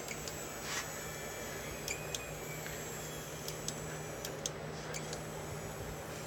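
A steady low electric hum with a few light clicks and taps scattered through it.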